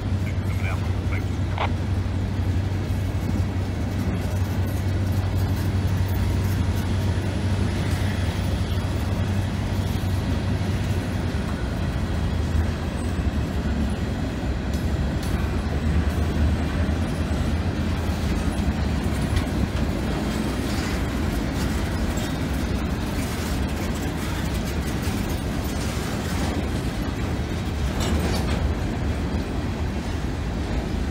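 Freight train of open hopper cars rolling past at a crossing: a steady low rumble of steel wheels on rail, with frequent irregular clicks and clanks as the wheel trucks pass over rail joints.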